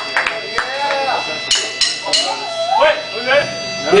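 Voices calling out and talking between songs, over a steady electrical hum from the band's amplifiers.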